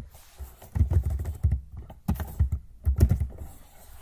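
Computer keyboard being typed on in three quick runs of keystrokes, about a second in, around two seconds and around three seconds, as a short word is entered.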